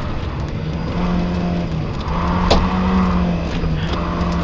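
Rally car engine heard from inside the cabin, running at steady revs. It climbs in pitch about a second in and again around the middle, then drops back near the end. A single sharp click comes a little past halfway.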